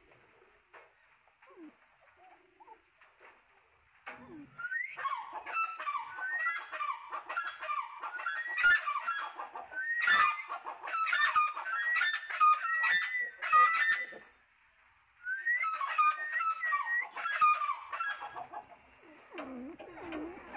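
Grey francolin calling: a long, loud series of shrill, rapidly repeated gliding notes starting about four seconds in. The calling breaks off briefly near the middle and then resumes in a second shorter run.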